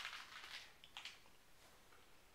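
Near silence: room tone, with a faint brief sound near the start and another about a second in.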